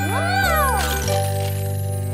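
A young child's voice lets out one rising-then-falling wail, like a cry of alarm or distress at a fall, over held background music chords.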